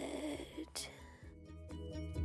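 A woman's breathy, mock-crying wail over background music. About a second and a half in, a light tinkling melody takes over.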